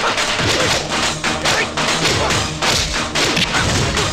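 Movie fight sound effects: a rapid run of punch and kick impact thuds, about two or three a second, over a loud action background score.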